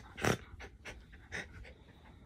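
A Yorkshire terrier breathing hard through its nose as it pushes its face into a bed blanket, with two short, sharp breaths: a loud one just after the start and a softer one a little past the middle.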